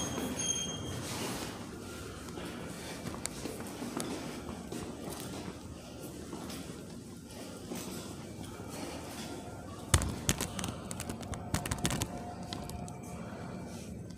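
Rustling and movement noise from a hand-held phone carried through a hallway, with a burst of sharp knocks and clatter about ten seconds in.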